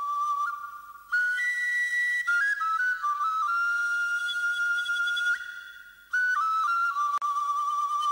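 Background music: a solo flute-like melody, one line of held notes stepping up and down, with two short breaks between phrases.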